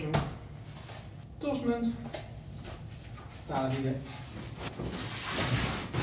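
A man's voice saying a few short words, with small handling sounds of kit being put on, and a brief rustling hiss near the end.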